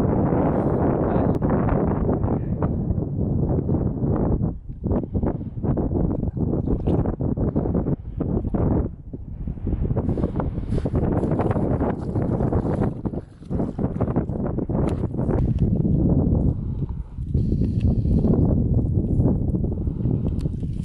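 Wind buffeting the microphone outdoors: a loud, uneven low rumble that drops away for moments several times.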